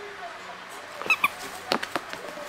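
A border collie moving on a bed: two short high squeaks about a second in, then a few soft thumps and rustles as it springs up.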